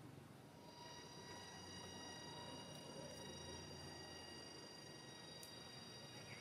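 Faint outdoor background with a steady high-pitched whine that sets in about a second in and holds, and one faint tick near the end.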